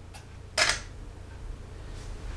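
Canon DSLR shutter firing once about half a second in: a single sharp click, with a fainter tick just before it.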